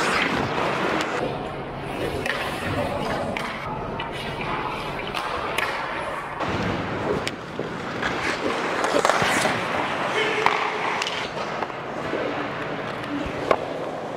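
Ice hockey play in an indoor arena: skate blades scraping on the ice, with sticks and the puck clacking and several sharp knocks scattered through.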